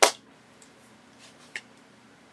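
A single sharp snap as the plastic lid of a Stampin' Pad ink pad is popped open, followed by a few faint ticks of the case being handled.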